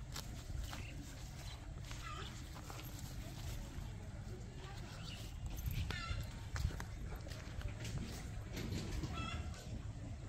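Outdoor garden ambience: a steady low rumble with scattered small clicks and rustles as red amaranth is picked, and a few short series of quick high animal calls about 2, 6 and 9 seconds in.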